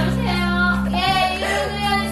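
A musical-theatre song: singing over an accompaniment of sustained low bass notes, the bass note changing about a second in.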